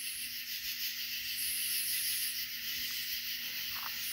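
A chorus of night insects: a steady high-pitched trill, with a still higher band that comes and goes twice.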